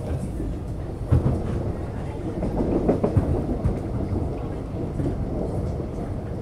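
Inside an Alstom X'Trapolis electric train car running at speed: a steady rumble of wheels on the track, with a few sharper knocks about a second in and around three seconds in.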